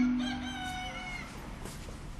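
A rooster crowing once, fairly faint and lasting a little over a second, its pitch dropping at the end. It follows the last note of a soft mallet-percussion music phrase dying away.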